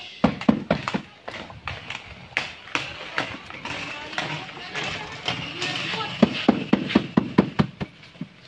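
Irregular taps and knocks, with rustling and scraping of potting compost, from hands working a coconut bonsai into a small wooden box pot.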